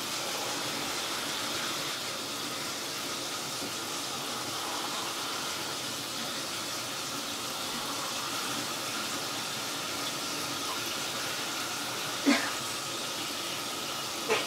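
Steady hiss of water running in a shower stall, with one brief sharp sound near the end.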